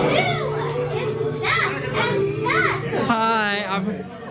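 Excited shouting from a small group of friends, voices rising and falling in wordless high-pitched calls, ending in one long wavering cry near the end, over background music.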